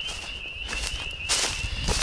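Footsteps through dry grass, with a louder rustle a little over a second in and another near the end, over a steady, faintly warbling high-pitched tone.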